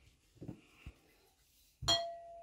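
A storage jar set down on a table: a couple of faint soft knocks, then a sharp clink near the end that leaves a clear ringing tone fading over about a second and a half.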